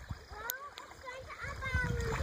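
Faint splashing of a child wading through shallow ditch water, towing a plastic sled with another child in it, with faint children's voices.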